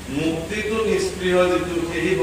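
A man reciting a Bhagavata verse in a chanting voice, holding one note for about half a second in the second half.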